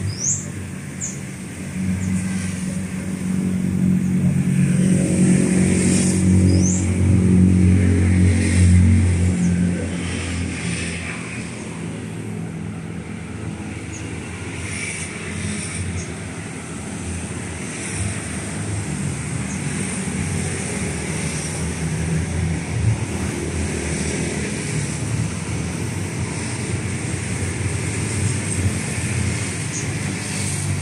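A motor vehicle engine running, loudest from about two to nine seconds in, then fading to a lower steady hum. A few short, high rising chirps come through near the start and again about six seconds in.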